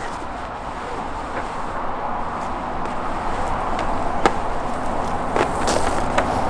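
Steady outdoor background noise with a low rumble and a few faint clicks.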